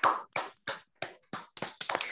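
Hand clapping heard over a video call: a quick, uneven run of separate claps, about five a second.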